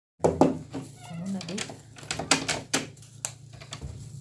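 Handling noise from a phone being moved about: irregular sharp clicks and knocks, the loudest two near the start. Underneath are a low steady hum and a faint voice.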